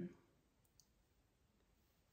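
Near silence: quiet room tone, with one faint short click a little under a second in.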